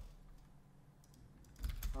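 A few computer keyboard keystrokes, a short burst of clicks about a second and a half in, after a quiet stretch.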